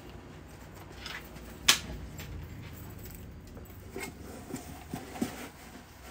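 Light handling sounds of packing items into a cardboard shipping box: faint rustles and small knocks, with one sharp click a little under two seconds in.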